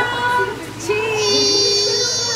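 A young child's voice singing out a short note, then a long drawn-out note from about halfway, with a high thin steady tone sounding over it.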